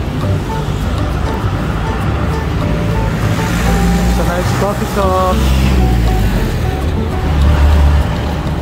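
Street traffic: cars and a truck passing with a low engine rumble that grows loudest near the end. Light background music with short melodic notes and a brief spoken word mix with it.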